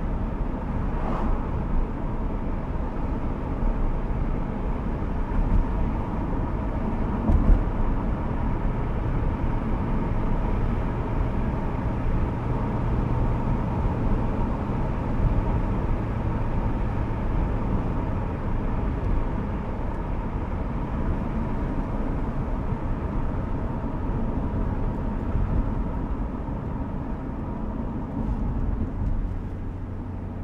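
Inside the cabin of a 1973 Mercedes-Benz 450SEL while it is driven at a steady pace: its 4.5-litre fuel-injected V8 runs steadily under continuous tyre and road noise. A low drone grows stronger for several seconds in the middle.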